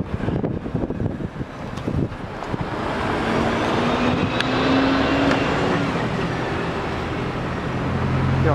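A car passes close by on a snowy road: its tyre and engine noise swells to a peak about five seconds in and then eases off. Wind buffets the microphone for the first two or three seconds.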